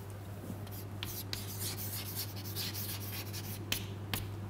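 Chalk writing on a blackboard: a series of short scratching strokes, with a sharper tap near the end. A steady low hum runs underneath.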